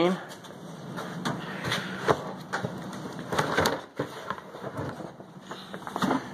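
A plastic storage tote being pulled off a wooden shelf and carried, with a run of knocks and scuffs about every half second.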